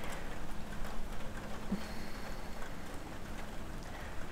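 Outdoor background noise: a steady low rumble and hiss with no distinct event, the kind of ambience from wind and distant traffic.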